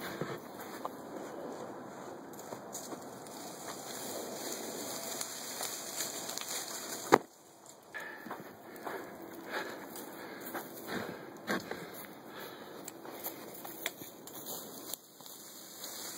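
Dry grass rustling and crackling close to the microphone as someone pushes through tall brush, with one sharp click about halfway through.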